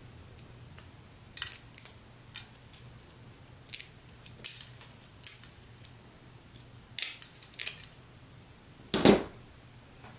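Small pieces of glass and hand tools clicking and clinking on a hard work surface: about a dozen short, sharp clicks spread irregularly, with one louder knock near the end.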